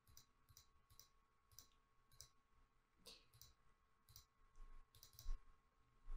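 Faint computer mouse clicks, about a dozen at uneven spacing, over near silence: paging a calendar date picker forward month by month and confirming a date.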